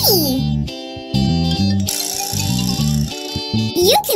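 Light children's background music with plucked guitar over a stepping bass line, a voice trailing off at the very start.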